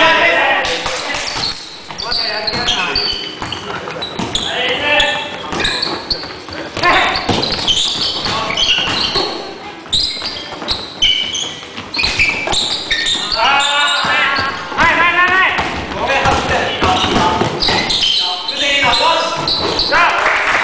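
Basketballs bouncing and players' feet on a wooden gym floor, echoing in a large hall, with players shouting and calling to each other, loudest in a run of shouts past the middle.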